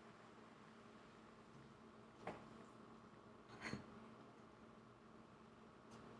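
Near silence: room tone with a faint steady hum, and two faint light knocks about two and three and a half seconds in.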